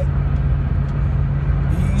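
Steady low rumble of a car heard from inside its cabin, with a steady low hum underneath.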